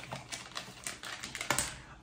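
Hands handling small jewelry packaging: a run of light, irregular clicks and crinkles from the plastic and foil, with a slightly sharper click about one and a half seconds in.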